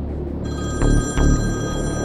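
Background music with two low drum hits, and a mobile phone ringing: a steady high electronic ring that comes in about half a second in.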